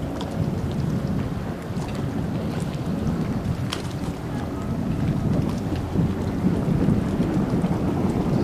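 Sea-Doo RXT personal watercraft running at speed on open water, heard from a distance as a steady rumble mixed with wind on the microphone. It grows louder in the second half as the craft comes nearer.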